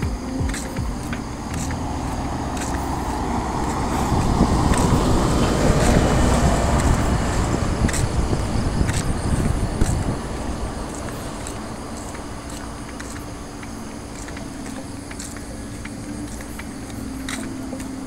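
A road vehicle passes close by: its engine and tyre noise swells about four seconds in, peaks, and fades away over the next several seconds, over a steady low hum of traffic.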